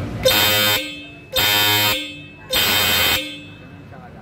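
Hella Supertone electric horns sounded in three short blasts of about half a second each, with a brief gap between them.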